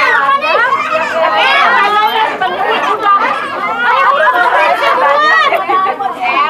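A group of children shouting and chattering over one another, many voices at once with no pause.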